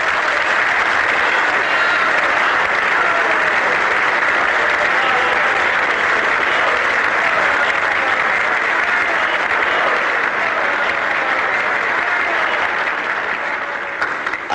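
Large crowd applauding steadily, starting abruptly and easing off slightly near the end.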